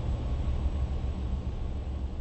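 A steady low rumble with a faint hiss over it, fading slowly: the ambient tail of an end-title sound effect.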